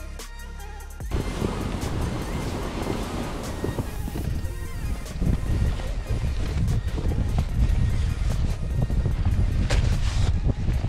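Music for about a second, then cuts to wind buffeting the microphone, with the scraping crunch of a sled dragged over snow-covered ice.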